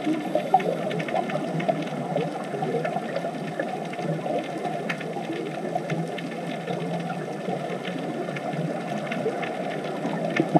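Underwater ambience on a rocky reef: a steady crackling hiss with many small scattered clicks.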